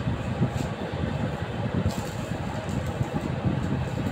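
Steady low background rumble, like a fan or air conditioner running, with a faint click about two seconds in.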